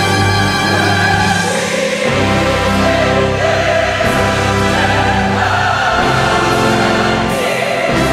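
Large church choir singing with orchestral accompaniment. They hold sustained chords that change about two seconds in and again near the end.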